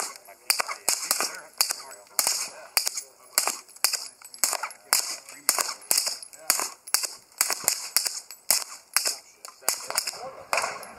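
Suppressed pistol shots through a .45-calibre Liberty Miranda suppressor: a long, steady string of short, sharp reports, about two to three a second.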